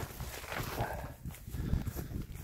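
Footsteps walking through long grass, irregular soft thuds with the swish and rustle of stalks brushing against the legs.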